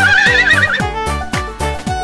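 Cartoon horse whinny sound effect: a rising, quavering call lasting under a second at the start, over an upbeat children's song backing track with a steady beat.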